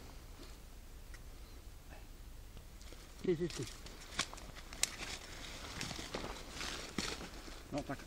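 Rustling and a few sharp crackles of dry grass and fallen leaves as a large pike flaps its tail on the ground while held against a measuring stick.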